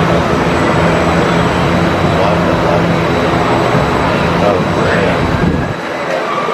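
Roller coaster train rolling along steel track toward the station, a loud, steady rumble that drops away just before the end.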